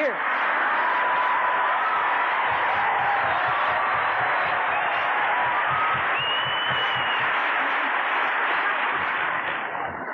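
Large audience applauding, a dense steady clatter of many hands that eases off near the end.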